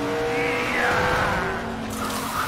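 Race car engines running hard as two cars race side by side on dirt, with one engine's whine falling in pitch partway through.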